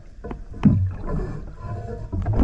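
Underwater sound of a diver working on a boat hull: an irregular low rumble of bubbles with scattered clicks and knocks, and a louder burst about two thirds of a second in.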